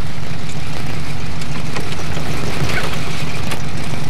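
Car engine running steadily, heard from inside the cabin as a low, even hum.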